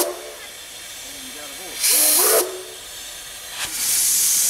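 Steam locomotive's exhaust beats as it works slowly: loud hissing chuffs about two seconds apart, one just at the start, one about two seconds in and one near the end, with a softer hiss of steam between them.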